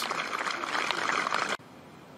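Golf gallery applauding an approach shot that has finished close to the hole. The clapping cuts off suddenly about a second and a half in, leaving faint outdoor quiet.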